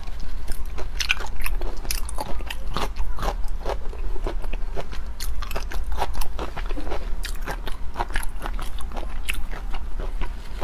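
Close-miked chewing with the mouth closed, a dense run of irregular small clicks as a mouthful of shrimp is chewed.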